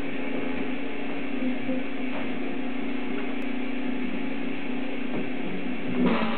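A steady hum with hiss that holds at one level and does not change.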